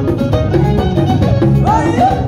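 Live Amazigh (Chleuh) wedding band music: a drum kit keeps a steady, driving beat under a melody line, with a sliding note rising near the end.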